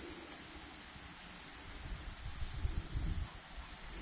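Faint, steady outdoor background hiss, with an irregular low rumble on the microphone in the second half.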